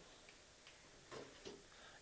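Near silence: room tone, with two faint brief sounds a little over a second in and about a second and a half in.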